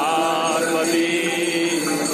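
Hindu devotional chant sung by voices, with long held notes.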